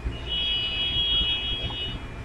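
A steady high-pitched tone made of several close pitches sounding together, starting just after the start and lasting nearly two seconds, over a low background hum.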